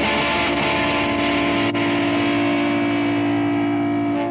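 Distorted electric guitars holding one sustained chord that rings on steadily: the closing chord of a live punk rock song.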